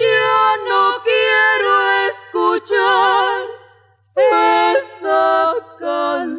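A female vocal duet sings a Mexican ranchera in two-part harmony, with almost no accompaniment. The held notes carry a wide vibrato. There is a brief pause between phrases about four seconds in.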